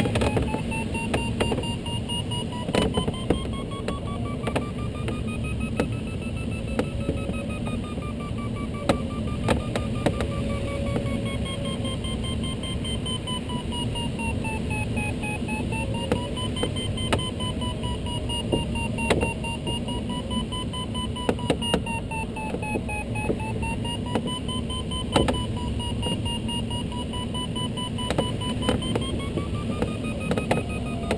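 Glider variometer's audio tone, wavering slowly up and down in pitch as the climb rate changes in the turn, over the steady rush of airflow in a Duo Discus cockpit, with scattered light clicks.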